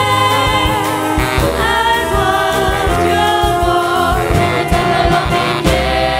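Live ensemble music with two girls singing a melody into microphones, backed by clarinets, saxophone, violins, bass and a drum kit keeping a steady beat.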